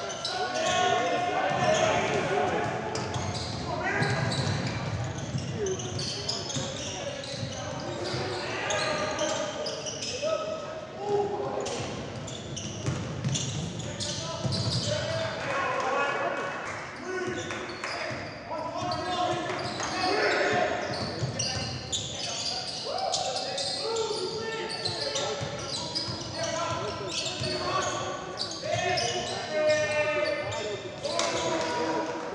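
Live game sound of a basketball game in a large gym: the ball bouncing on the hardwood court, with players and coaches calling out, echoing around the hall.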